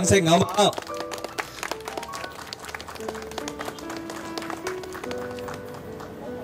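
Guests clapping in scattered applause that thins out toward the end, over soft background music playing a slow melody of held notes. A man's voice is heard briefly at the start.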